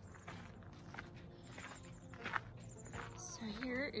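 Footsteps on a gravel driveway, irregular steps as someone walks with the camera. Near the end a loud, wavering whine comes in.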